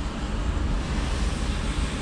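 Steady rushing noise over a constant low hum inside a car's cabin.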